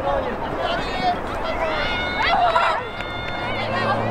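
Voices of lacrosse players and spectators shouting and calling out on an open field, with one louder shout a little past halfway. A low steady hum comes in near the end.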